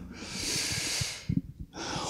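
A man's audible breath through mouth and nose, a soft hiss lasting about a second, taken in a pause between sentences, followed by a few faint mouth clicks.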